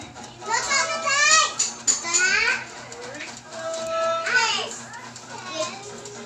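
High-pitched voices calling out in several sweeping cries that rise and fall in pitch, with a faint steady low hum underneath.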